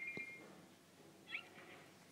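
Faint, high-pitched cartoon squeaks. A short, held whistle-like tone with a soft tap comes at the start, then a brief rising chirp a little past the middle.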